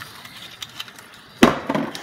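A single sharp knock about one and a half seconds in: something hard set down on the kitchen bench, with a short ring-out, after a stretch of low background noise.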